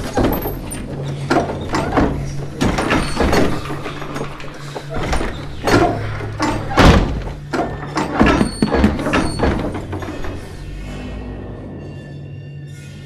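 Heavy knocking and banging on a door, a dozen or so irregular blows, over a steady low musical drone; the loudest blow comes about seven seconds in, and the blows die away near the end.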